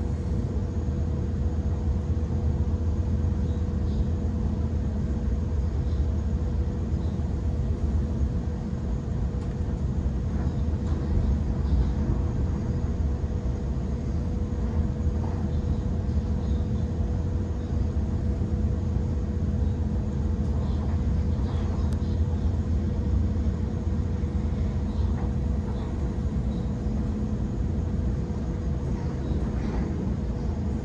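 Steady running noise of a Waratah A-set double-deck electric train heard from inside the passenger cabin: a low rumble of wheels on rail with a constant hum over it and a few faint ticks.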